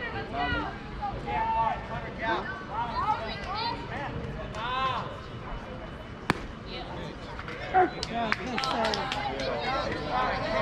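Youth baseball players and spectators calling out across the field, with one sharp pop about six seconds in as the pitch reaches the plate.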